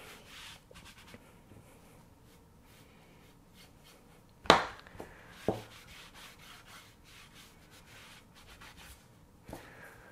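A paintbrush stroking thinned chalk paint and glaze onto a raw wooden paddle blade, then a cloth rag rubbing it back; faint, scratchy strokes. A sharp knock about four and a half seconds in, followed by two lighter knocks.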